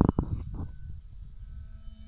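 Wind rumbling on the microphone, with loud buffeting in the first half second, over a faint steady whine from the distant electric motor and propeller of a model airplane.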